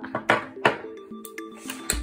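Background music with a few sharp clacks in the first second: oval magnets and small magnetic balls knocking together and being set down on a tabletop.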